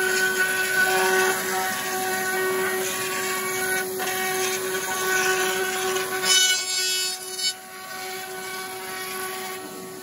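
Table-mounted router spinning a bearing-edge cutter with a steady high whine while a drum shell is turned over it, the bit cutting the shell's inner bearing edge with a rough, wavering cutting noise. The cutting noise stops about seven and a half seconds in, and the router runs on more quietly.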